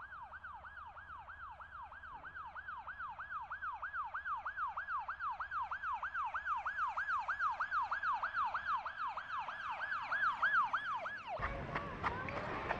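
Ambulance siren sound effect, a rapid falling wail repeating about three times a second and growing louder as it approaches, then cutting off near the end.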